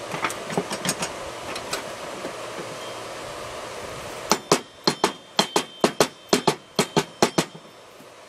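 Orange dead blow hammer tapping a lawn tractor mower-deck pulley to knock it loose from its spindle shaft. A rapid run of about a dozen light taps, starting about halfway through and lasting about three seconds, with a faint metallic ring.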